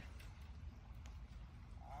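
Faint outdoor background noise with a few soft clicks, and a voice starting just before the end.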